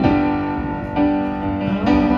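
Roland RD-700SX digital stage piano playing sustained chords through a PA, a new chord struck about every second.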